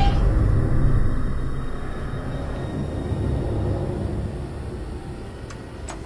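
Deep, loud rumble of horror-film sound design that slowly fades away.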